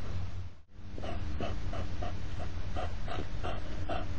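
European hedgehogs huffing in quick, rhythmic snorts, about three a second, starting about a second in after a brief dropout. This is the loud snorting of the hedgehog courtship 'carousel', in which the male circles the female. A steady low hum runs underneath.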